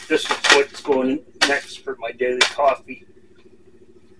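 Crinkling of a paper coffee bag as it is handled and set down, mixed with bursts of a voice during the first three seconds, over a faint steady hum.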